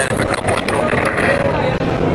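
Billiard hall background: many people talking at once, blurred into a steady murmur over a constant noisy hum.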